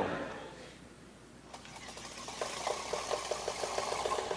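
Small demonstration water wheel driven by a jet of tap water. Spray hiss starts about a second and a half in, then the wheel spins up with a rapid, regular ticking of about seven strokes a second as it turns.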